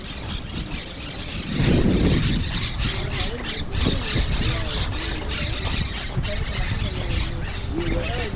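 Footsteps on a packed dirt road at a steady walking pace, about two steps a second, with wind rumbling on the microphone that swells briefly about two seconds in. Wavering squeals and squawks sound over the top.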